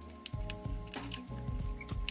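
Background music, with small scissors snipping repeatedly through wool fabric as a welt-pocket seam is cut open.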